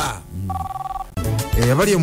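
A telephone ringing briefly: a short electronic ring of two rapidly pulsing high tones, lasting about half a second.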